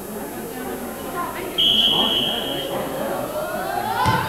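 A referee's whistle blown once, a single steady high note lasting about a second, over spectators' voices. Right at the end comes a thud as the ball is kicked.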